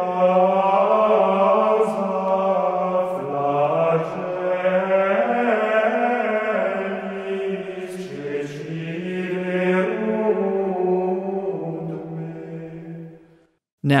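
Unaccompanied chant sung as a single melody line without harmony (monophony), moving slowly between long held notes. It fades out shortly before the end.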